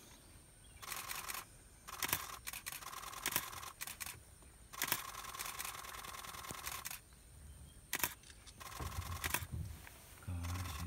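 Camera shutters firing in rapid bursts: several runs of fast clicks, each lasting about a second or two, with short pauses between them.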